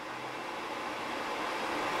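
A steady, even hiss of background room noise, growing slightly louder.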